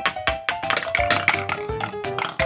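Background music with a quick series of wooden clicks and clacks: a wooden ball dropping from ramp to ramp down a wooden pound-a-ball toy tower.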